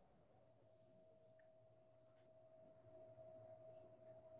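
Near silence: room tone with a faint, steady single tone.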